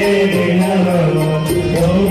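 Devotional chanting sung as a melody over a steady drone, with light regular percussion ticks.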